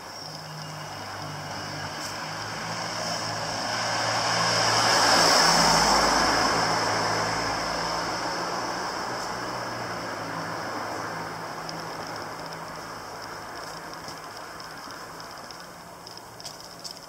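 A road vehicle passes along the street, its tyre and engine noise rising to a peak about five seconds in and then slowly fading away.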